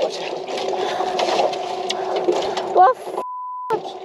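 Voices over a steady background, then a half-second steady beep about three seconds in: a censor bleep over a swear word.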